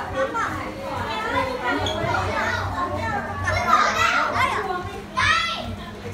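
Many children's voices chattering and calling out at once, with one loud, high-pitched child's shout about five seconds in.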